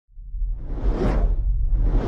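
Cinematic whoosh sound effects over a low rumble. One whoosh swells and fades about a second in, and a second one begins near the end.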